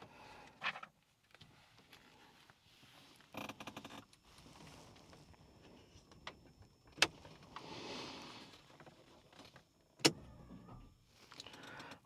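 Switches clicking on a Toyota AE86's dashboard, two sharp clicks about three seconds apart, with a soft electric whir of the flip-up headlight motors just after the first.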